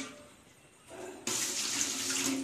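Water starts running about a second in, after a brief quiet, and keeps flowing steadily, as from a tap, while aquarium parts are rinsed.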